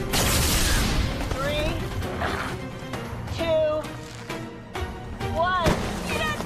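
Cartoon soundtrack: a loud rushing blast in the first second, then wordless shouts and screams from the characters, over dramatic background music.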